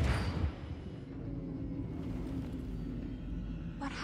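Science-fiction film sound effects for a spaceship dropping out of a jump: a deep boom fading away in the first half second, then a low steady rumble as the ship drifts through wreckage, with a short sharp sound near the end.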